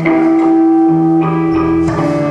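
Live band's instruments playing held notes, led by electric guitar, with a change of notes about a second in and a new note struck near the end.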